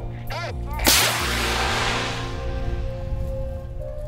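A hand-held signal rocket flare fired into the air to start the match: a sharp bang about a second in, then a hissing rush that fades away over the next second or two.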